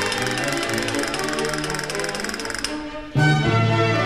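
Spanish baroque music for chamber orchestra with castanets: rapid castanet clicks rattle over the strings, fade out, and a little after three seconds the orchestra comes in suddenly and loudly with sustained chords, as at the start of a new piece or section.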